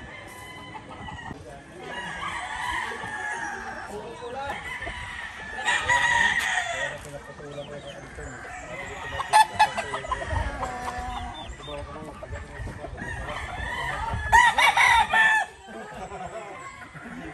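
Gamefowl roosters crowing and chickens clucking in wire cages, with two louder crows, about six seconds in and near the end.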